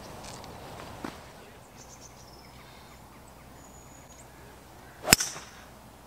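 A golf club striking the ball on a tee shot: one sharp, loud crack about five seconds in.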